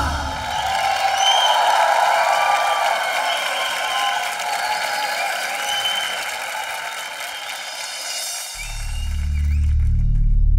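Studio audience applauding and cheering at the end of a group's song, an even wash of clapping. About eight and a half seconds in, a deep sustained bass drone of background music swells in.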